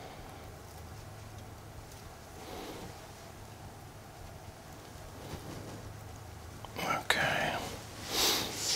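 Quiet room with a steady low hum and faint rustling as hands work wire through spruce branches, then a short breathy, whispered vocal sound with a click near the end.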